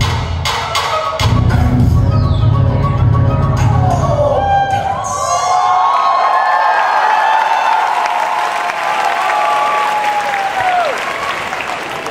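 Dance-routine music with a heavy bass beat and percussion that ends with a falling sweep about four seconds in, followed by an audience cheering and screaming.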